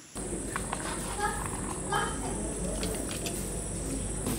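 Steady background hum with a thin high whine, and a few short, faint pitched calls, about a second and two seconds in.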